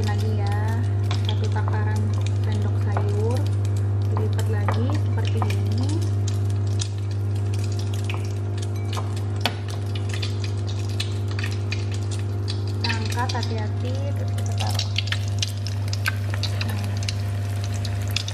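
Hot oil sizzling and crackling steadily in a frying pan as egg-and-tofu martabak parcels in spring-roll wrappers fry, over a steady low hum.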